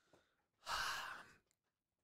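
A man's sigh: one breathy exhale lasting under a second, about halfway through, with near silence around it.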